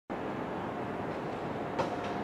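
Electric train running at a station: a steady running noise, then a sharp click near the end as a steady high whine begins.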